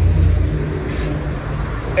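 Road traffic on a busy main road: motor vehicles driving past with a low rumble, strongest in the first half second, then easing to a steady hum.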